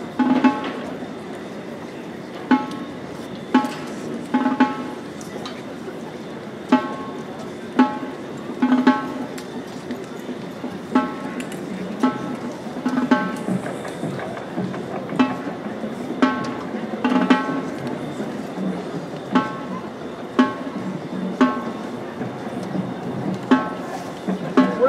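Sparse percussion hits from a marching band's front ensemble. Each hit is a sharp strike with a short ringing pitched tone, coming irregularly about once or twice a second over a low crowd murmur.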